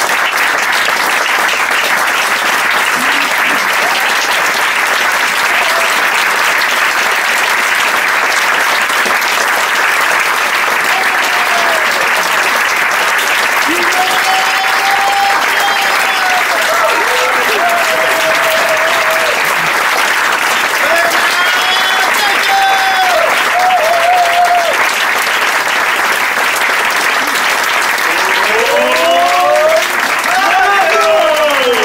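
Live audience applauding steadily, with voices calling out over the clapping in the second half.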